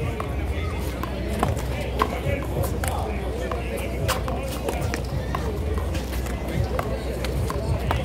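Irregular sharp smacks of a small rubber handball being struck by hand and bouncing off the concrete wall and court. The loudest comes about four seconds in, over steady background chatter.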